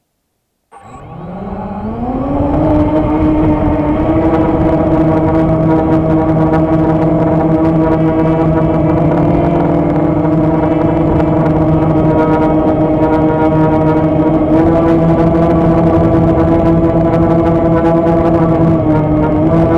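Black Widow 260 FPV racing quadcopter's brushless motors and propellers spinning up from rest about a second in, rising in pitch, then holding a loud, steady hum of several tones as the drone lifts off and climbs. Heard close up from the camera mounted on the drone.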